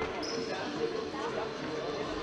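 Echoing sports-hall sound of a futsal match: the ball knocking on the hard hall floor and off players' feet, mixed with the voices of players and spectators.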